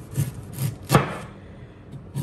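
Chef's knife slicing a head of cabbage on a wooden cutting board: about four quick cuts knocking on the board in the first second, the loudest about a second in, then a short lull.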